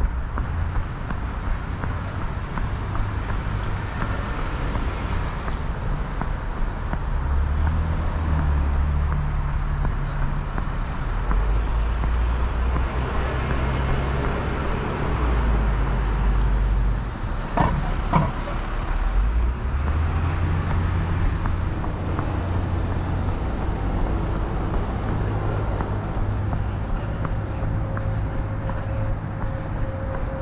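Road traffic on the street alongside: cars passing with a steady low rumble that swells and fades as vehicles go by, with a brief high squeak about two-thirds of the way through.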